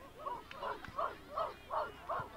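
A dog barking repeatedly, five short barks in quick, even succession, about two or three a second.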